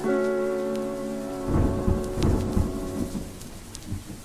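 Lofi music: a sustained chord over steady rain, with a low rumble of thunder swelling and fading about halfway through.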